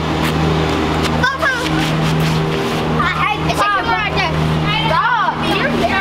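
High-pitched children's voices calling out and chattering in short bursts over a steady low hum.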